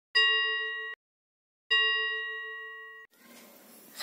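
Two bell-like ding sound effects from an intro animation, each struck once and ringing down. The first is cut off abruptly after under a second, and the second rings about a second and a half before it too cuts off suddenly.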